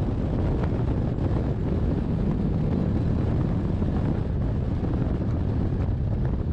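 Wind rushing steadily over an action camera's microphone on a hang glider in flight, a dense low buffeting noise.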